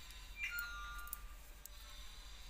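Faint clicks of metal knitting needles as stitches are worked, with a short, steady high tone of two notes starting about half a second in and lasting under a second.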